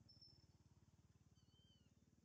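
Near silence with a faint low hum, broken by two faint, thin, high animal calls: a short whistle just after the start and an arched squeak in the last half second.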